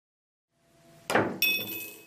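A pool cue ball knocks hard into the table's cushion. A fraction of a second later a coin clinks into a drinking glass, ringing briefly with a few high tones: the coin has been launched by the compressed cushion into the glass.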